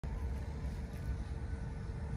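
Steady low rumble of outdoor background noise with a faint steady hum above it.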